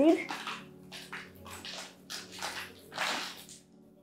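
Parlor palm root ball being pulled apart by hand: potting soil crumbling and roots tearing in a series of soft rustles and crunches.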